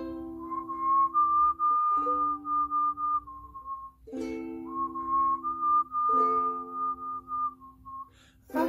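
Ukulele playing a C–G–Am–F chord progression, each chord struck about every two seconds and left to ring, with a whistled melody carried over the chords.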